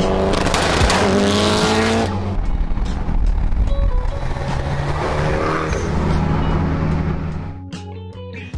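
Turbocharged Mitsubishi Lancer Evolution engines accelerating hard, the pitch climbing twice through the revs with a break between, over background music. Near the end the engine sound falls away and the music carries on.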